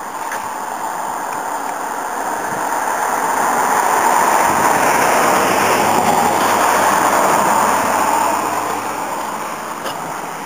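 A vehicle passing close by: a rushing noise that swells over the first few seconds, holds at its loudest in the middle, then fades near the end.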